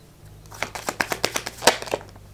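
A tarot deck being shuffled by hand: a quick run of card clicks and flicks starting about a quarter second in.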